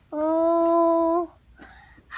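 A small child singing one long held note, steady in pitch, lasting a little over a second.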